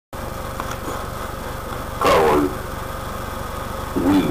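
A steady low hum with a fast, even pulse, like a small motor or fan. About halfway through it is broken by a short, louder voice-like sound that falls in pitch.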